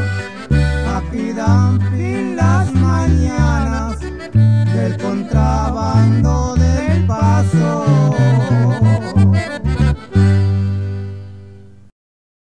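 Norteño instrumental ending: accordion playing a melody with quick runs over bass notes and guitar, closing about ten seconds in on a held final chord that fades away.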